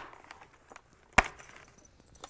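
Two sharp clicks, one at the very start and one about a second later, as the snap fasteners of a motorcycle helmet's removable comfort liner pop open while the liner is pulled free, with faint fabric rustling between them.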